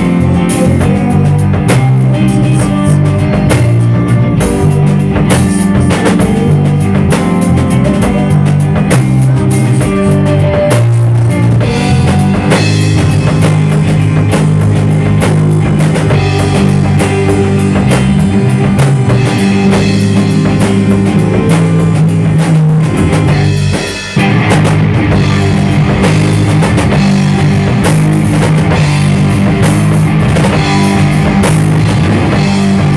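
A rock band playing loudly: electric guitar over a drum kit and a low bass line, keeping a steady driving rhythm. About three-quarters of the way through the sound drops away for a split second before the band comes back in.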